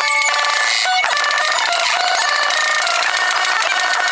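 Live rock band with drum kit played back at many times normal speed, which pitches the whole mix up into a dense chatter of high squealing tones over a rapid patter of drum hits.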